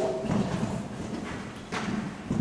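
A showjumping horse's hooves thudding on a sand arena surface as it lands from a jump and canters on. The loudest hoofbeats come about a third of a second in and again near the end.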